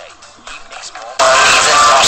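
Music with a voice, quiet at first, then suddenly much louder just over halfway through.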